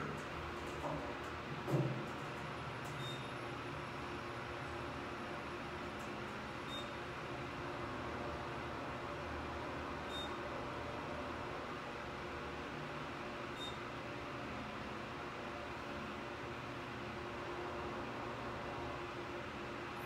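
Kone EcoDisc machine-room-less traction elevator car travelling down, a steady hum inside the cab. A short, faint high beep sounds about every three and a half seconds, four in all, as the car passes each floor.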